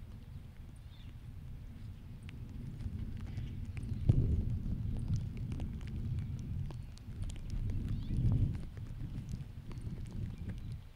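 Wind buffeting an outdoor microphone, a low rumble that swells in two gusts about four and eight seconds in, with scattered faint ticks over it.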